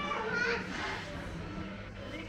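Background chatter of people in an indoor market hall, with a child's high voice loudest about half a second in.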